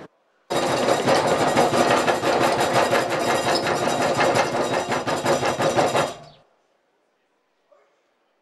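A loud, fast rattle of many rapid knocks, like a jackhammer, starting half a second in and dying away about six seconds in.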